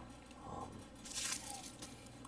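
A plastic bubble-wrap sleeve crinkling briefly as it is picked up off the table, about a second in.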